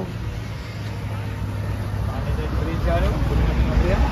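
Road traffic: a vehicle's low engine rumble that grows louder through the second half, with a few faint rising and falling tones near the end.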